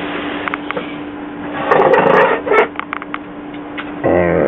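Handling noise: a scraping rustle about two seconds in, followed by a quick series of light clicks, over a steady low hum and hiss.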